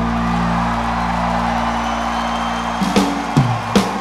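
Live rock band (guitar, bass and drums) playing an instrumental passage. A chord is held and left ringing for the first few seconds, then drum hits and a new bass line come in near the end.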